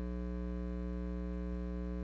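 Steady electrical mains hum: a constant low drone with a row of evenly spaced higher overtones.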